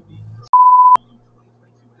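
Censor bleep: a loud, steady beep at one pitch, about half a second long, that ends in a sharp click. A faint low hum follows.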